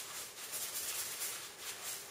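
Light rustling and rattling of small objects and paper being handled on a worktable.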